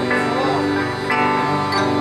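Live rock band with accordion playing an instrumental passage: held accordion chords over plucked guitar and bass notes, with new notes struck every half second or so.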